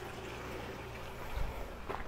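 Water running from a drain line into an aquaponics IBC tank, a faint steady trickle over a low hum, with a dull thump about one and a half seconds in.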